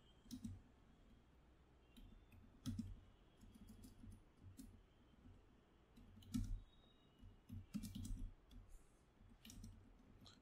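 Faint, irregular keystrokes on a computer keyboard: scattered light clicks with short pauses between them.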